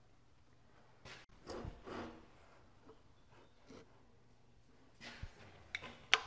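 Near silence, broken by a few faint short clicks and rubbing sounds.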